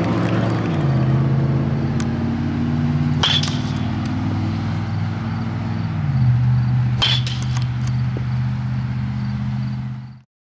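Background rock music: low sustained chords that change about a second in and again about six seconds in, with a few sharp percussive hits, dropping away at the very end.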